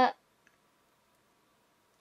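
Near silence with room tone and a single faint click about half a second in.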